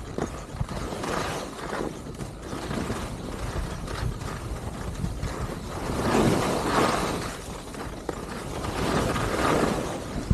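Skis sliding and scraping over groomed snow through a series of turns, with wind rumbling on the microphone. The scraping swells louder with the turns about six seconds in and again near the end.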